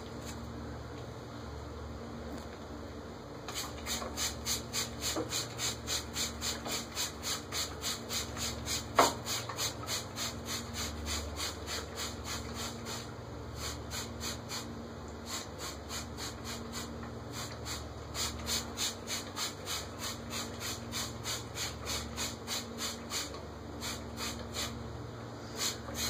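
Praying mantis chewing a moth close to the microphone: fast, even crunching clicks, about four a second, beginning a few seconds in, over a faint low hum.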